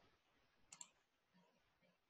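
Near silence broken by a single computer mouse click, a quick press-and-release pair of clicks about three-quarters of a second in.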